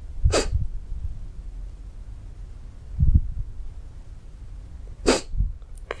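A man crying with two sharp sniffs, one just after the start and one about a second before the end, and a soft low sound in between.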